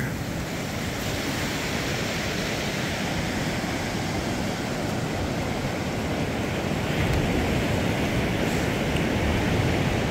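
Lake Superior waves breaking and washing up on a sandy beach, a steady wash of surf that swells slightly louder in the last few seconds.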